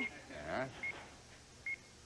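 Game-show countdown clock beeping: a short, high electronic beep about once a second, three times, with a brief voice in between.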